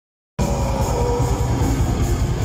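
A metal band playing live at full volume, heard from the audience: loud distorted guitars over rapid, dense drumming. The sound cuts in abruptly about a third of a second in, mid-song.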